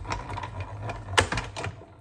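Plastic plates of a hand-cranked cut-and-emboss machine being stacked onto its platform: a few light clicks and knocks, the sharpest about a second in, with a steady low hum underneath.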